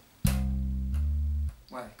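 Electric bass played slap style: a thumb-slapped C on the A string's third fret with a bright, percussive attack. About halfway through, the little finger hammers on to a D, changing the pitch without a new pluck. The note is cut off short soon after.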